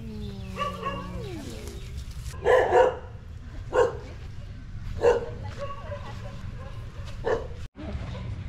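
Dogs barking in kennels: a handful of sharp barks spaced about a second apart.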